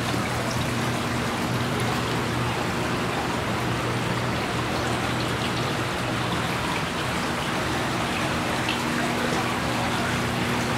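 Water trickling steadily down the panels of several Adagio indoor water fountains into their pebble-filled basins, with a steady low hum underneath.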